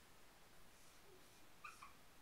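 Near silence: faint strokes of a dry-erase marker on a whiteboard, with a brief high two-note squeak near the end.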